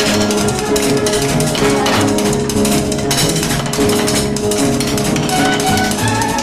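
Band playing an instrumental passage: a drum kit keeps a steady beat under sustained pitched instruments, with no singing.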